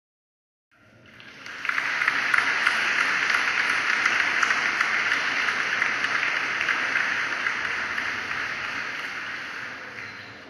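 A steady rushing noise without any pitch, fading in about a second in and fading out at the end.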